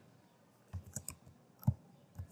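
Computer keyboard keys being typed: a few short, soft clicks in two small clusters.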